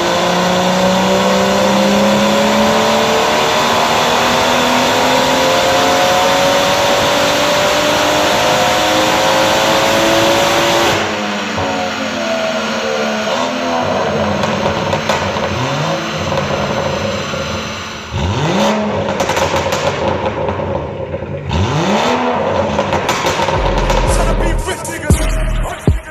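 BMW M140i's turbocharged 3.0-litre straight-six on a rolling road dyno, pulling under load in one long, steady climb through the revs for about eleven seconds before the throttle snaps shut. It then falls back toward idle and is blipped three times, with pops and crackles on the overrun from the stage 2 remap.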